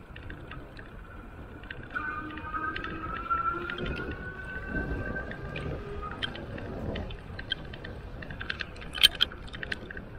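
Electric bike's rear hub motor whining in a steady high tone. For a few seconds from about two seconds in, the pitch climbs slowly as the bike picks up speed, over a rumble of tyre and wind noise. Toward the end come scattered small clicks and ticks, with the sharpest a second before the end.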